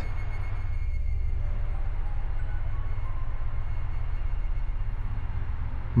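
A low, steady droning rumble: a dark ambient music drone.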